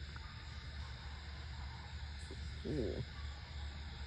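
Faint outdoor night background with a steady low hum. About three seconds in there is one short pitched sound that rises and falls.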